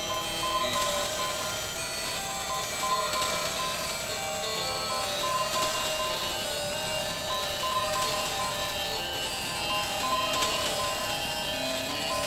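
Music: a steady layered texture of held tones, with some higher tones flickering on and off.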